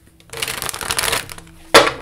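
A deck of tarot cards shuffled by hand: a quick run of card flutter lasting about a second, then a single sharp slap near the end.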